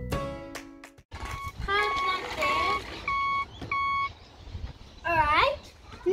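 Background music fades out in the first second. Then a child's voice and a run of steady, evenly spaced electronic beeps, each about half a second long, like a toy truck's reversing alarm. A child's loud rising and falling vocal sound comes near the end.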